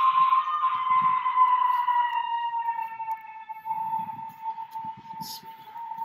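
One long, steady, high-pitched wailing cry held on nearly one note and sinking slightly in pitch: the eerie screaming heard in the abandoned house. Faint low rustling runs beneath it.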